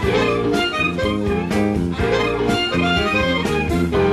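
Live electric blues band playing: harmonica and electric guitar over a steady beat from the drums.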